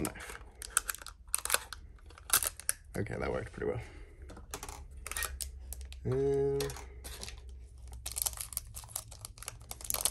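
Plastic shrink-wrap on a pack of photocards crinkling and clicking as it is slit with a craft knife and handled. The clicks come irregularly and grow denser near the end as the wrap is worked loose.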